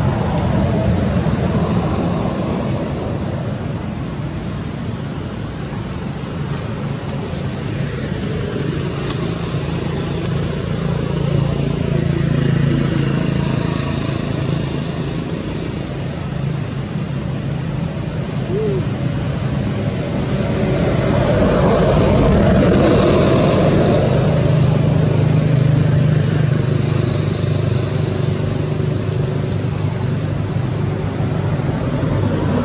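Steady low rumble and hum of motor vehicles, swelling a little louder about two-thirds of the way through.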